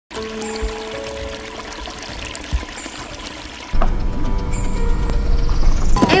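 Small stream of water pouring over rocks, under background music. The music jumps louder with heavy bass a little under four seconds in.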